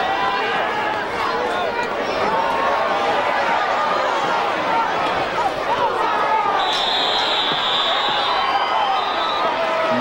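Football crowd in the stands yelling and cheering during a play, many voices at once. A whistle blows for about two seconds near the end.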